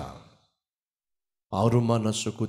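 A man's voice through a microphone, speaking in Telugu. His words fade out, then there is about a second of complete silence where the recording is cut. His speech resumes about one and a half seconds in.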